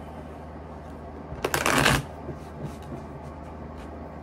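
A deck of tarot cards shuffled in one quick burst about a second and a half in, lasting about half a second.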